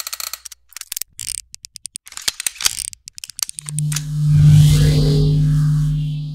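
Electronic logo-animation sound effect: a stuttering run of sharp glitchy clicks and crackles, then a deep steady hum that swells up and begins to fade near the end.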